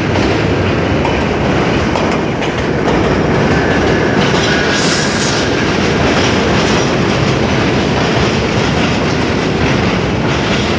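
R68A subway train cars running past close by as the train pulls into an elevated station, a loud steady rumble with the wheels clattering over the rail joints. A faint high whine sounds in the middle, with a short hiss about halfway through.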